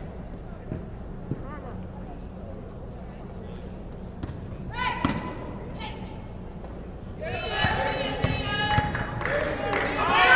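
Basketball being played in a gym: a few ball bounces and thuds, then sneakers squeaking on the court and players calling out, getting busier from about seven seconds in.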